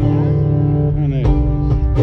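Acoustic guitar played live through a PA system, sustained chords ringing steadily as a new song gets under way.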